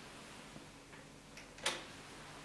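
Philips CD100 CD player giving a few faint ticks, then one sharp click near the end as its display goes dark: the player switching off.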